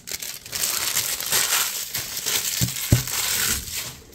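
Empty foil trading-card pack wrappers crinkling and being crumpled by hand, with two short knocks close together about three seconds in.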